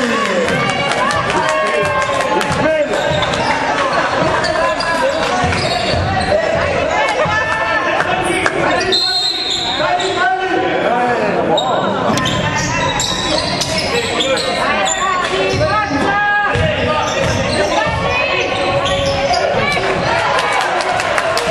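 A basketball being dribbled on a hardwood court, its bounces echoing in a gymnasium, under steady shouting from players and coaches.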